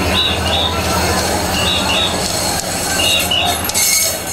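Short, high whistle blasts in quick pairs, repeating about every second and a half in a regular rhythm, over the steady din of a large mikoshi procession crossing the bridge.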